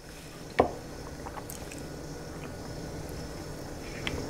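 A sip of a warm malted milk drink from a ceramic mug: one short slurp about half a second in, then low room noise, with a light knock near the end as a mug is set down on the counter.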